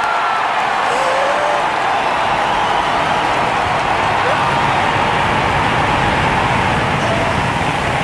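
Steady, continuous roar of New Glenn's first stage at liftoff, its seven BE-4 methane engines at full thrust, with a crowd cheering and whooping underneath.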